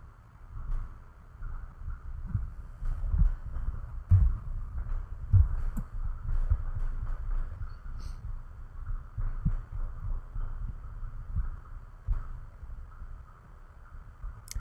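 Soft, irregular low thuds with a few faint clicks over a faint steady hiss.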